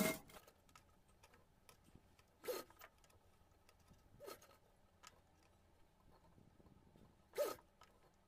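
Very quiet, with three brief soft swishes of cotton fabric being handled and pushed along, a couple of seconds apart.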